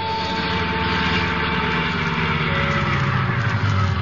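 Radio-drama sound effect of a car engine running, a steady low rumble, under the held last note of a music bridge that fades out about halfway through.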